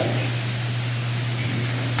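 Steady hiss with a low, even hum, the background noise of a microphone and sound-system recording, with no other event.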